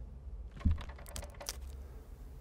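A low thump, then a quick run of sharp clicks and taps about a second in.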